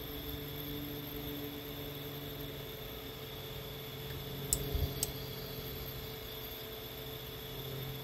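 StepperOnline A6 100 W AC servo motor and its drive running faintly as the motor homes to its encoder's Z marker: a low, steady hum, with an extra tone for about the first three seconds while the rotor turns. A couple of soft clicks come about four and a half and five seconds in.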